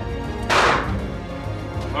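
Background music, with one loud gunshot about half a second in that rings briefly in the range hall.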